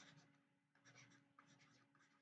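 Near silence, with a few faint scratches of a stylus writing, near the start, about a second in and around a second and a half.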